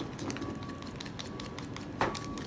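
Hand wire whisk beating a runny batter of flour, egg and milk in a bowl, the wires clicking against the bowl several times a second, quickly and unevenly.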